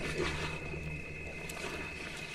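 Spotted hyenas feeding at a kill: scattered short chewing and tearing sounds over a steady low hum and a steady high tone.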